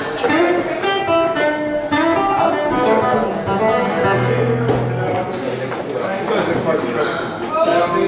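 Live acoustic guitar playing a run of single plucked notes, with people's voices talking over it.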